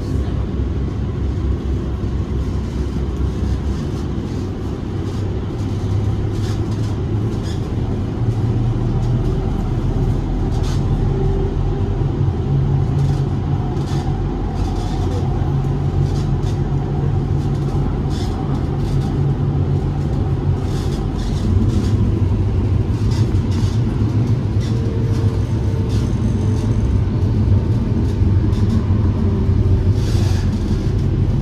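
LA Metro E Line light rail train heard from inside the car while running along the track: a steady rumble of wheels on rail, with scattered light clicks and rattles and a faint whine.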